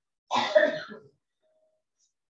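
A person coughing once, a single short burst.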